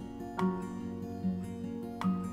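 Background music: a soft acoustic guitar melody of sustained plucked notes.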